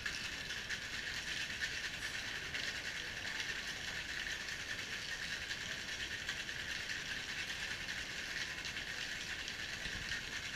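Ice rattling inside a metal cocktail shaker being shaken hard, a fast steady rattle that does not break, as the drink is chilled, mixed and aerated.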